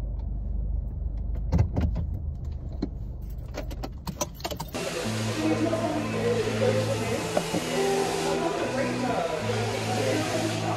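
Car engine and road rumble inside the cabin, with a few sharp clicks in the first half. About five seconds in it cuts to background music with a steady, changing bass line.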